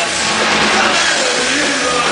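Punk rock band playing live at full volume: heavily distorted electric guitar over a drum kit, coming through the club's PA.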